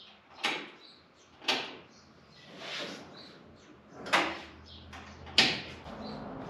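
About five short scuffs and knocks, roughly a second apart, from a person climbing out of an open Willys Jeep and stepping on a concrete shop floor. A faint low hum comes in about halfway through.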